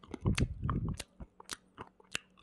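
A person chewing small, hard herbal supplement pellets: a quick, irregular run of crunches.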